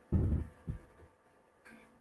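Keyboard typing heard only as a few low, muffled thumps in the first half second, then near silence.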